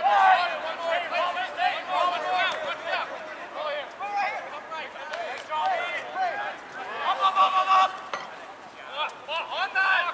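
Rugby players shouting and calling to each other during play, several voices overlapping, with one longer held shout about seven seconds in.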